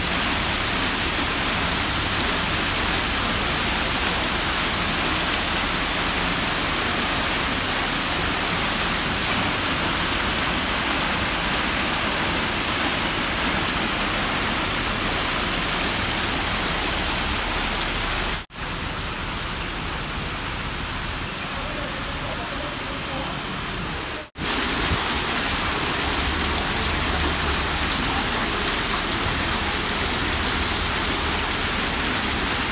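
Fountain water cascading down tiled steps and splashing into a pool, with jets bubbling up from the surface: a steady rush of falling water. The sound breaks off abruptly twice, a little past the middle and again about six seconds later, with a slightly quieter stretch between.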